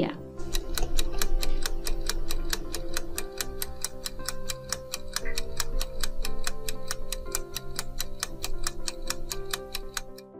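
Clock-ticking timer sound effect: fast, evenly spaced ticks, several a second, over a soft sustained music bed. The ticking stops near the end.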